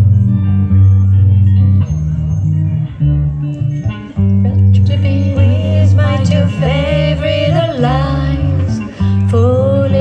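Live band playing a cover of a rock song: electric guitar and keyboard chords, with a woman's singing voice coming in about halfway through.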